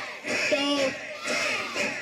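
A group of children shouting together in unison during a karate drill: two drawn-out shouts, the first holding a steady pitch about half a second in.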